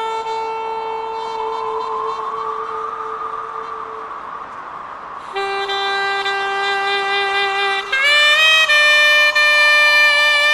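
A reed wind instrument playing long held notes: one note that fades away a few seconds in, a short gap, then a lower note that climbs in quick steps near the end to a higher, louder held note.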